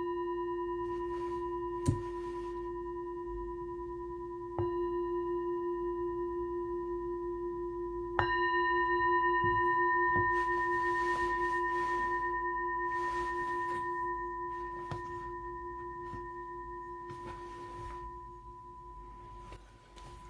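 Singing bowl struck three times to close a meditation: once just before, then again about four and a half and eight seconds in, each strike renewing a long steady ring that slowly fades. A sharp click sounds once about two seconds in.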